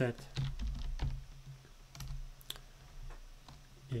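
Typing on a computer keyboard: a run of irregular key clicks as code is entered.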